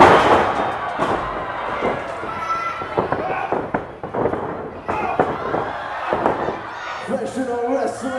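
Pro wrestlers' impacts in the ring: a loud slam on the ring mat at the very start, then a run of sharp slaps and thuds as strikes land. Crowd voices shout throughout, louder near the end.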